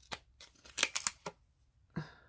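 Stiff paper playing cards being slid apart and thumbed through by hand, giving a quick run of crisp flicks and snaps that is thickest about a second in.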